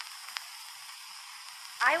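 Steady hiss and faint crackle of an old, narrow-band archival recording, with a couple of light clicks in the first half-second. A woman's voice starts speaking again near the end.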